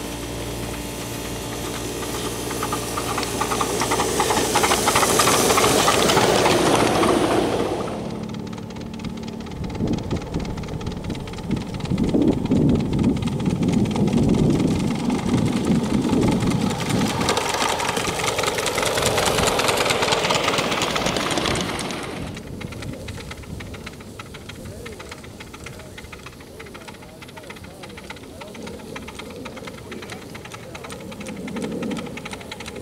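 1-inch scale ride-on miniature trains running on their track, a small live steam locomotive among them. A loud hissing rush swells and stops suddenly about a quarter of the way in, a lower rumble follows, and a second hiss swells and drops away about three quarters of the way in, leaving quieter running.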